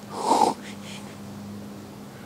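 A person's short breathy exhale, a half-second huff near the start, over a faint steady low hum.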